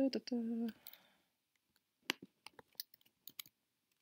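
A short hummed vocal sound at the start, then a scattering of soft, quiet computer keyboard and mouse clicks about two seconds in, as code is pasted into an editor and run.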